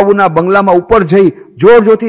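Speech only: a man talking in Gujarati.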